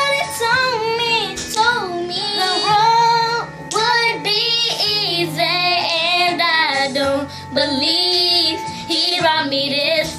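Two young girls singing a gospel song together, drawing out long wavering notes and vocal runs, with steady music behind them.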